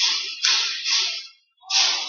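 Hockey arena background noise during live play: a noisy hiss of crowd and play on the ice, rising and falling in swells, with a short break before the end.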